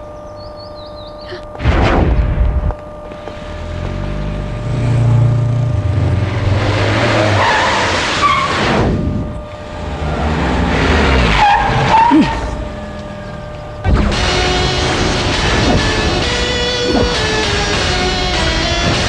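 A car in a film sound mix: a loud hit about two seconds in, then the engine revving and tyres squealing and skidding as it drives up. Background music takes over about fourteen seconds in.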